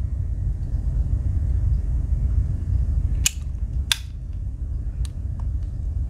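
Sharp metallic clicks from a Victorinox Cyber Tool 41 Swiss Army knife as its cap lifter and bit driver snap closed and open on their backsprings. There are two clicks a little past halfway, about half a second apart, and a fainter one later, over a steady low rumble.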